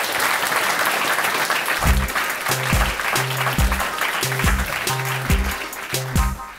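An audience applauding. About two seconds in, music with a repeating bass line comes in under the clapping.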